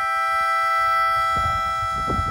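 A reed wind instrument holding one steady chord of several notes, with low rumbling noise underneath.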